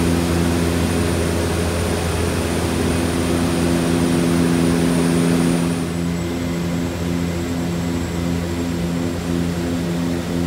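Cabin drone of a de Havilland DHC-6-300 Twin Otter's two PT6A turboprop engines and propellers in flight: a steady low hum with a hiss over it. About six seconds in the hiss eases a little and the hum takes on a regular throbbing beat, the sound of the two propellers turning slightly out of step.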